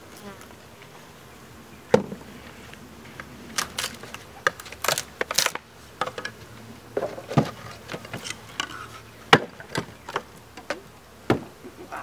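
Honeybees buzzing in a package of bees, with a series of sharp knocks, clicks and scrapes as the wooden package box and its lid are handled.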